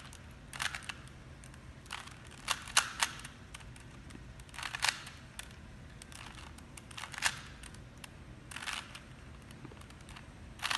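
A 3x3 Rubik's Cube being turned by hand: its plastic layers click and clack in short bursts of a few quick turns, about seven bursts spaced a second or two apart.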